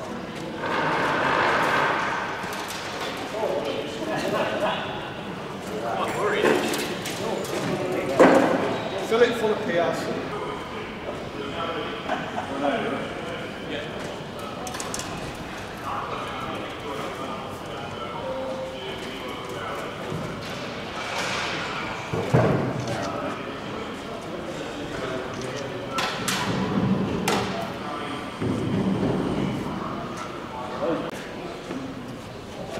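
Men talking indistinctly while they manhandle a heavy metal aircraft tailplane, with occasional knocks and thuds as it is shifted into place. The sharpest knocks come about eight seconds in and again about twenty-two seconds in.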